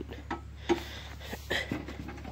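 A few light clicks from the riding mower's parking-brake latch being handled, over a steady low rumble.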